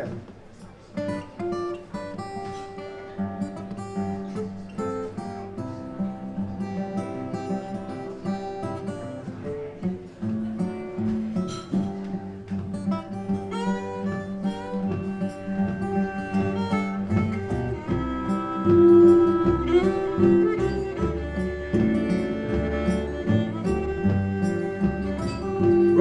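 Old-time string band playing an instrumental introduction: acoustic guitars with fiddle and double bass, growing louder and fuller through the passage.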